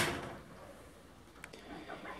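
Small electric blade coffee grinder cutting off and spinning down within the first half second, then quiet room tone with one faint click about one and a half seconds in.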